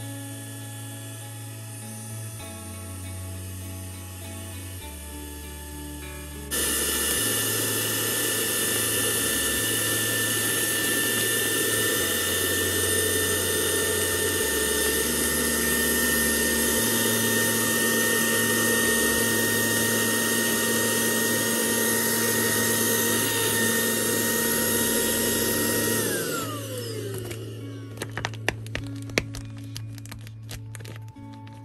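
Cordless handheld vacuum cleaner switched on about six seconds in, running steadily with a high motor whine as it sucks the air out of a plastic vacuum storage bag of blankets, then switched off and whining down in pitch near the end. A few sharp clicks follow. Background music plays throughout.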